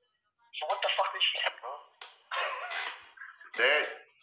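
Speech only: voices talking over a live-stream call, starting about half a second in after a brief near silence.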